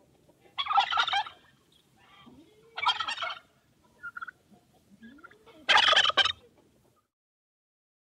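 A male turkey (tom) gobbling three times, each gobble a short rattling call, about two and a half seconds apart.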